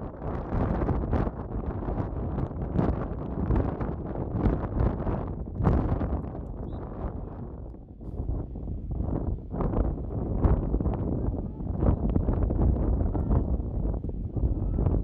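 Wind blowing on the microphone in uneven gusts, easing briefly about eight seconds in.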